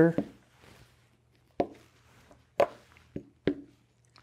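Wooden chess pieces set down on a board as moves are played out: four sharp knocks over about two seconds.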